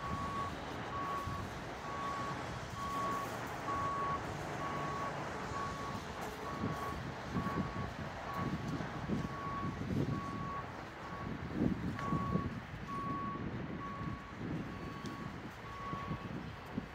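A vehicle's reversing alarm beeping steadily, about one beep a second, heard from off in the street, over steady outdoor noise and gusty low rumbling in the middle.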